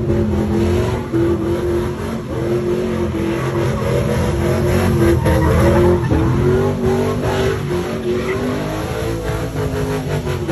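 Pickup truck engine held at high revs during a burnout, its pitch wavering up and down, with the rear tyres spinning and squealing on the pavement.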